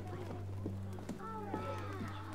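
Footsteps of a group of children walking in, with faint murmuring voices starting about a second and a half in, over a steady low hum.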